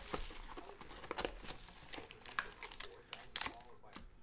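Clear plastic shrink-wrap crinkling and tearing in irregular crackles as it is stripped off and crumpled from a sealed trading-card hobby box.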